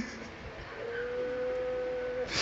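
A person weeping, with one long, high wailing note starting about a second in and held steadily, rising slightly in pitch.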